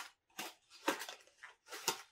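A small cardboard model-kit box being handled and opened by hand, making several short scrapes and rustles of card and packaging, about five in quick succession.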